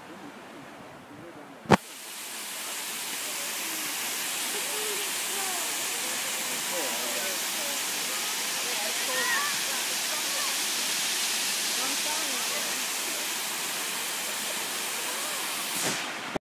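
A sharp click about two seconds in, then the steady rushing hiss of a waterfall pouring into the pool below, with faint distant voices over it.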